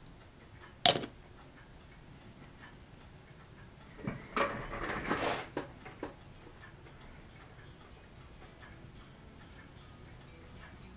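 Handling noise at a modelling workbench: one sharp click about a second in, then a couple of seconds of small knocks and rustling around the middle as tools and equipment are moved. A faint, steady clock ticks underneath throughout.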